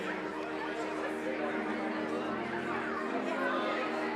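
Many people talking at once in a large hall, an unbroken murmur of overlapping conversations with no single voice standing out. This is a congregation chatting as it gathers before a church service.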